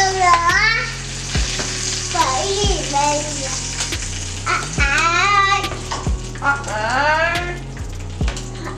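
Burger patties sizzling in a frying pan on a gas burner, a steady hiss under background music. The music has a sung vocal and a low beat about once every second and a bit.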